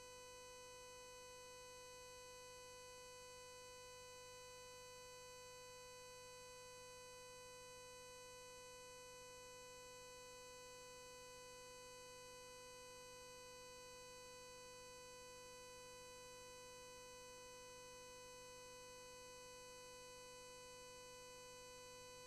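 Near silence with a faint, steady electrical hum and whine, a constant pitch with a ladder of higher tones above it, unchanging throughout.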